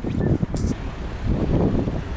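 Wind buffeting the camera microphone: an irregular low rumble in gusts.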